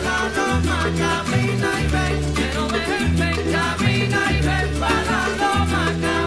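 Recorded Cuban música campesina played by a Latin band, with a bass line that changes note about every second.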